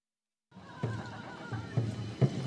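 Traditional Naga folk dance: a troupe of dancers chanting, their voices wavering up and down in pitch, over repeated heavy thuds. It starts after half a second of dead silence.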